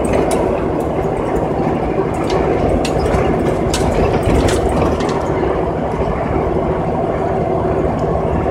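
Steady diesel engine hum of a Peterbilt 387 semi-truck heard inside its cab, with a few light clicks in the first half.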